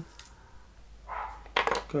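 A small toy figure toppling over on a shelf with a brief clatter about a second and a half in; a fainter click comes earlier.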